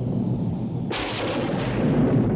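Soundtrack sound effect: a low rumble with a sudden crash, like a thunderclap, about a second in that dies away over the following second.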